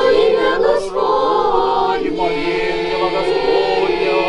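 A church choir of girls and women singing an Orthodox hymn, several voices together in sustained, gently moving lines.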